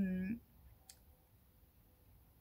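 A woman's voice trailing off on a drawn-out word, then a pause of low room tone with a single faint click about a second in.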